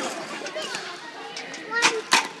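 Background voices of children playing and people talking, with a single sharp knock near the end.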